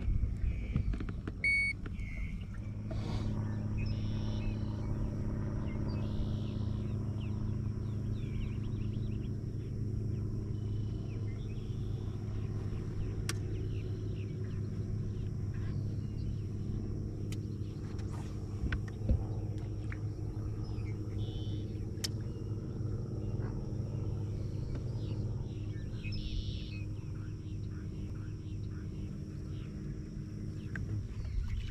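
A steady low motor hum on a bass boat, even in pitch throughout, with a few faint sharp clicks over it.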